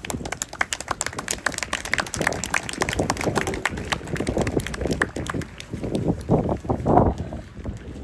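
Scattered hand clapping, many sharp claps a second, with raised voices calling out over it; the voices are loudest about seven seconds in.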